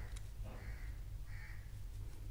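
A bird calling twice, two short harsh calls about half a second and a second and a half in, over a low steady hum.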